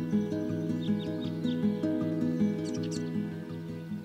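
Background music with a repeating pattern of notes, and a few short, high bird chirps in the middle.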